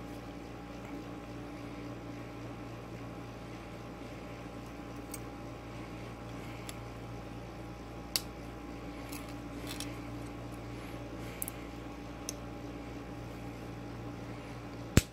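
Coin-cell battery being handled and pressed into a circuit board's battery holder: a few faint clicks and scrapes, the clearest about eight seconds in, over a steady low hum.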